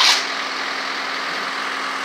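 Work vehicle engine idling at a street repair site: a steady hum with a fixed low tone. There is a short burst of hiss at the very start.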